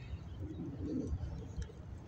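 A dove cooing softly, one low call about half a second in, over a steady low rumble.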